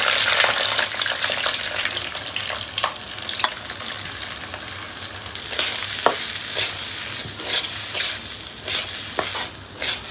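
Rice sizzling as it is tipped into hot oil in a black metal karahi, loudest as it first goes in, then stirred with a spatula, with a scatter of sharp scrapes and clicks against the pan.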